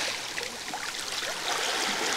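Small sea waves washing in over flat rocks and pebbles at the water's edge, the water hissing and trickling back between waves. It eases off in the middle and starts building again near the end as the next wave comes in.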